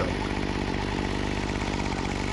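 Remington RM2580's 25cc two-stroke trimmer engine idling steadily.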